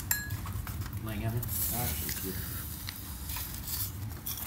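Occasional light clinks of dishes and cutlery on a dining table, with faint voices talking in the background.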